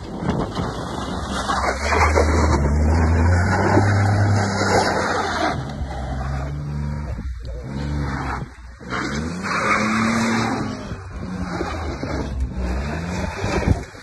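Tata Tiago hatchback's three-cylinder engine revving hard under load as it climbs a steep dirt slope. The pitch rises and falls in surges, with a couple of brief drops in the middle.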